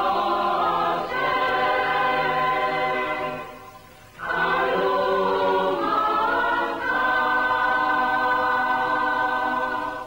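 A choir singing held chords in two phrases, with a short break a little after three seconds in. The chords change a couple of times, and the last one stops suddenly at the end.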